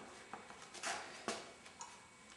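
Faint rubbing and a couple of brief scrapes, about a second in, from hands handling a bicycle wheel and its tyre with the new inner tube tucked inside.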